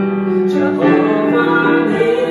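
A man and a woman singing a worship song together to a Casio digital keyboard, with long held notes.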